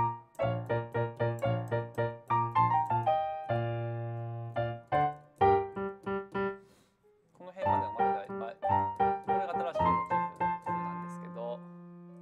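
Piano playing a classical piece: quick repeated chords, about four a second, a chord held for a second or so around four seconds in, a brief stop near seven seconds, then more chords ending on a held low note.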